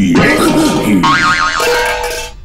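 Cartoon spring boing with a fast wobbling pitch, starting about a second in, as a jester toy shoots up out of a tin can on a coiled spring, jack-in-the-box style.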